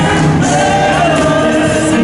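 Gospel music with a choir singing long held notes, loud and steady.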